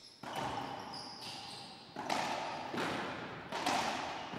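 Racquetball rally in an enclosed court: about four sharp ball strikes off racquets and walls, each ringing briefly, with a thin high squeak about half a second in.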